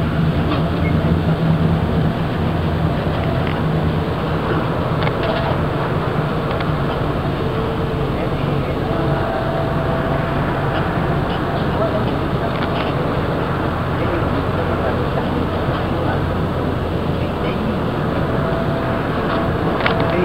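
Bus engine and road noise inside a moving bus: a steady low drone with scattered light rattles and clicks.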